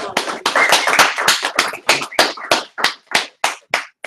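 Audience applauding: a burst of clapping that thins out to a few scattered claps and stops just before the end.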